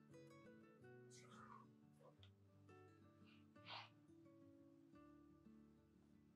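Very faint background music of plucked guitar notes, near silence otherwise, with a couple of soft brief noises.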